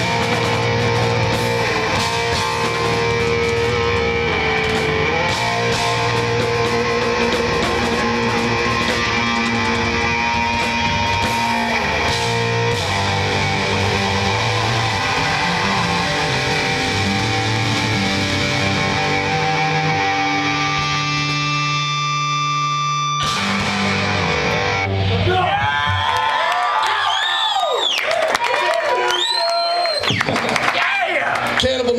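Live heavy metal band playing loud distorted electric guitars, bass and drums. About two-thirds of the way through the full band drops out, leaving held notes and sweeping, wavering pitch glides.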